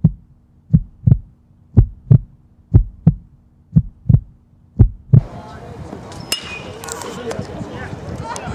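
A heartbeat sound effect, a low double thump about once a second, builds tension. About five seconds in it gives way to live ballpark sound with crowd voices, and a second later a sharp crack as a metal bat meets the pitch.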